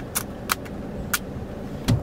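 A few sharp, separate clicks from a disposable film camera being handled, wound and fired, over a low steady hum inside a car.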